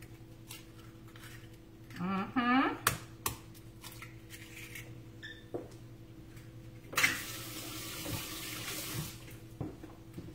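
Kitchen faucet running into the sink for about two seconds, then shut off, with a few light clicks and knocks of dishes earlier.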